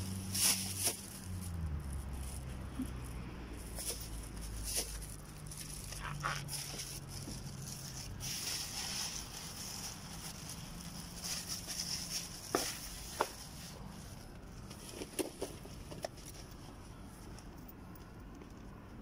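A low droning hum that drops in pitch about a second in and fades out by about eight seconds, with scattered clicks and rustling from gear being handled.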